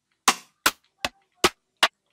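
Rim shot drum samples playing as they are previewed one after another: five short, sharp hits about 0.4 s apart.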